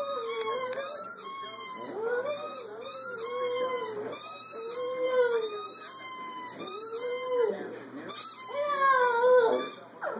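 A small dog howling: a series of drawn-out howls about a second each, rising and falling in pitch, with a higher wavering whine running above them and a louder howl near the end.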